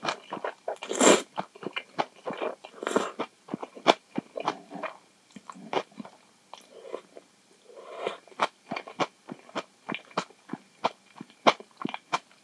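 Close-miked eating of instant ramen noodles: two loud slurps in the first three seconds, then steady wet chewing full of small sharp mouth clicks, with a few more softer slurps.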